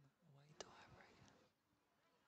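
Near silence with faint whispered speech in the first second and a half, and one short click about half a second in.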